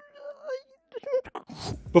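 A woman crying: a high, wavering, wailing sob that trails off about half a second in, followed by a short sob around one second in.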